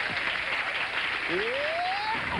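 Audience applauding, an even clatter of many hands, with a single voice calling out on a rising pitch in the second half.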